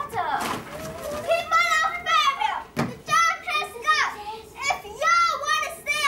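Children's voices on stage: loud, high-pitched cries and calls, with a single thump about halfway through.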